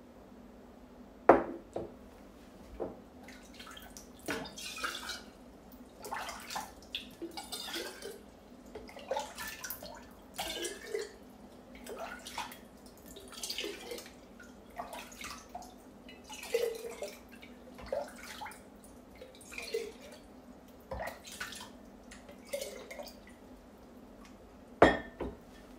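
Water being poured and scooped into a glass jar in a run of short splashes and trickles, roughly one a second, with a sharp glass clink about a second in.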